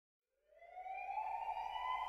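A siren wailing, one tone rising steadily in pitch from about half a second in.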